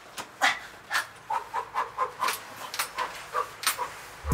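A man panting and whimpering in short, strained breaths, about three a second, as he drags himself across the floor.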